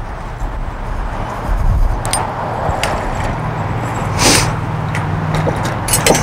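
An engine running steadily with a low hum, and a few light clicks and one brief louder rush a little past four seconds in as the tyre-sealant fill canister on its stand is handled and turned over.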